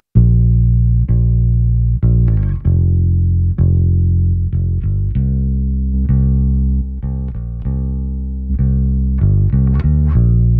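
Soloed Fender Precision bass played fingerstyle, its clean DI signal blended with a SansAmp signal carrying a little drive: warm, round low notes, each plucked and held, changing about once a second.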